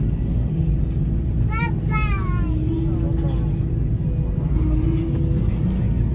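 Cabin noise inside an Airbus A330 taxiing after landing: a steady low rumble from the engines and rolling wheels, with a faint hum that shifts in pitch. A brief high-pitched voice calls out twice about a second and a half in.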